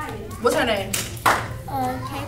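Two sharp hand claps, about half a second and a second and a quarter in, among speaking voices.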